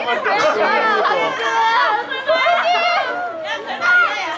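Several people's voices talking over one another, loud and continuous.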